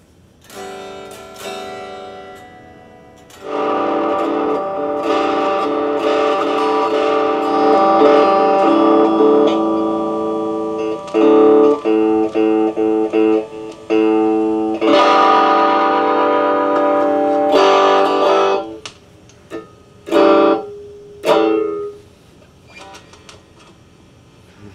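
Stratocaster-style electric guitar playing chords: a couple of single notes, then held chords, a run of short choppy chords in the middle, more held chords, and a few last short stabs near the end before it stops.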